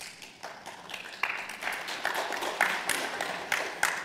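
Audience applauding, many hands clapping, growing louder.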